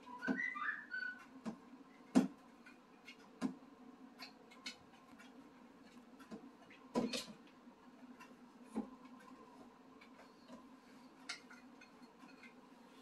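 Plastic spatula scraping and tapping inside a jar as soaked red lentils are knocked out into a blender jug: scattered quiet clicks and taps, with a sharper knock about two seconds in and another about seven seconds in.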